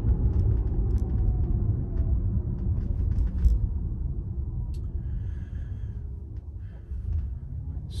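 Low road and tyre rumble heard inside the cabin of a Tesla electric car, with no engine sound, easing off about five seconds in as the car slows for a stop sign.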